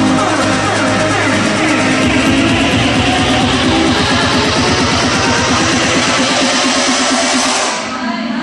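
Guitar-led backing music playing loudly; a fast, even pulse comes in about two seconds in, and the music dips briefly at the very end.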